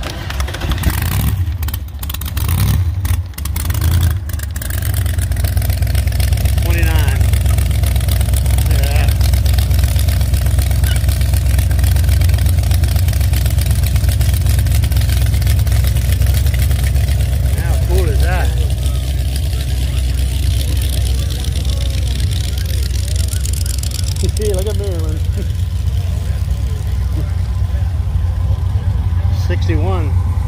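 Hot-rodded 1928 Dodge with an exposed engine and open zoomie headers, running with a deep, steady low rumble as it drives off. There are a few brief sharp crackles in the first few seconds.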